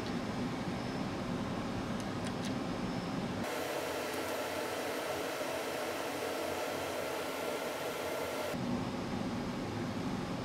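Steady fan noise from the cinema projector's cooling fans, with a couple of faint ticks about two seconds in. From about three and a half seconds to eight and a half the noise abruptly turns thinner and hissier, with less low end.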